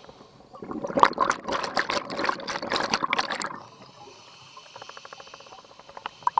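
Scuba diver's exhaled breath bubbling out of the regulator, heard underwater, for about three seconds; then a quieter stretch with a fast run of small clicks.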